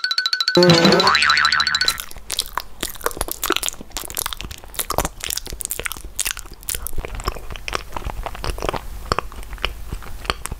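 A cartoon boing sound effect with a wobbling pitch in the first two seconds. Then a long run of close, rapid crunching and chewing eating sounds, as the toy bear is made to eat the fruit bite.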